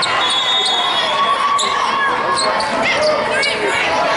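Indoor volleyball play in a large, echoing hall: sneakers squeaking on the court and the ball being struck, over a steady babble of players' and spectators' voices from many courts.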